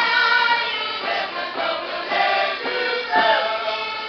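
A group of girls singing a Portuguese folk song together, with an accordion playing along.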